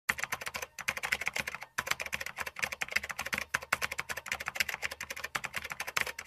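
Keyboard typing sound effect: a rapid, uneven run of key clicks, broken by two short pauses just before one and two seconds in.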